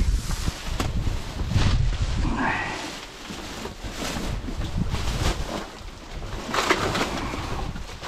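Plastic garbage bags rustling and crinkling in irregular crackles as a gloved hand shoves them aside and digs through the rubbish, with wind rumbling on the microphone.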